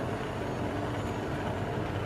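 Steady low rumble with a hiss: kitchen background noise, constant throughout.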